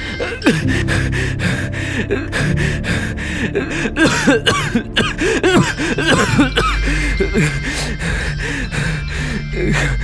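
A man coughing and gasping in repeated, strained fits over steady background music.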